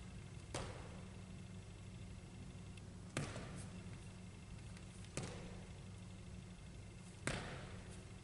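Four sharp thuds of a player's sneakers landing on a wooden gym floor from forward and backward jumps, about two seconds apart, each with a short echo from the hall, over a steady low hum.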